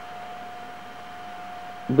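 Quiet, steady hiss with a thin, steady whine held on one pitch; a man's voice starts right at the end.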